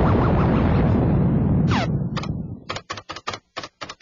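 Cartoon sound effect: a loud rush of noise that fades over about two and a half seconds, with a brief falling whistle in it, followed by a rapid run of sharp clicks.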